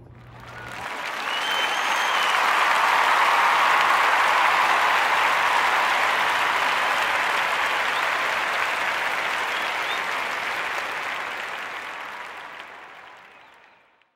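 Crowd applauding, swelling in over the first couple of seconds and fading out to silence at the end, with a brief whistle about a second and a half in.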